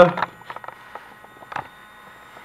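Herrmann Hyper Medozon Comfort ozone therapy device running faintly as it builds pressure in the i-Set: a steady hum with a few light clicks.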